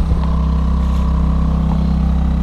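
Small outboard motor on a sailboat running steadily at cruising speed, a continuous low drone, with a brief knock right at the start.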